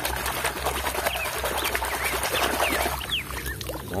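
Water splashing and sloshing as a hand scrubs a muddy toy truck with a foamy sponge in shallow muddy water. Short rising and falling bird chirps are heard behind it through the middle.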